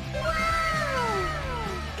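A cat's single long meow, rising briefly and then falling in pitch for about a second and a half, over steady background music.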